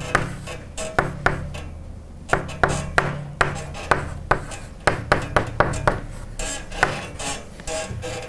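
Chalk writing on a blackboard: an irregular run of sharp taps and short scrapes, a couple of strokes a second, as symbols are written.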